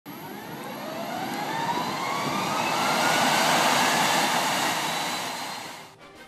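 Aircraft engine running up: a whine rising steadily in pitch over a rush of engine noise that swells and then fades out near the end.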